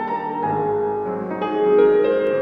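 Grand piano played solo in a free improvisation: sustained chords ringing on, with new notes and a low bass note struck about half a second in and more notes about a second and a half in.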